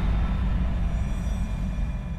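Logo-sting sound effect: the deep, low rumbling tail of a boom, slowly fading, with faint high ringing tones above it.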